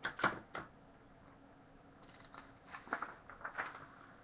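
Sheets of paper being handled and turned over to the next page: a couple of short knocks near the start, then crinkly rustling from about two seconds in.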